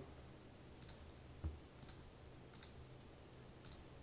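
A few faint, scattered clicks from a computer mouse and keyboard over a low room hum, one a little louder about one and a half seconds in.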